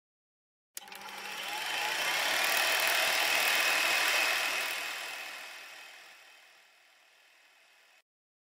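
A noisy intro sound effect for an animated logo. It starts suddenly about a second in, swells over two or three seconds and then slowly fades away.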